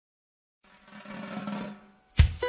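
Music: after a moment of silence, a drum roll swells up for about a second and dies away.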